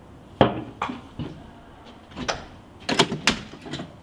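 A series of sharp knocks and clunks, about seven over four seconds, the first the loudest.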